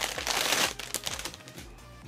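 Clear plastic bag crinkling as a plastic model-kit runner is slid out of it. The rustle is densest in the first second and then fades away.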